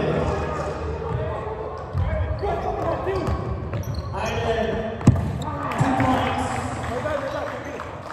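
Basketball bouncing on a hardwood gym floor during play, with a sharp bounce about five seconds in, amid players' and spectators' voices echoing in a large hall.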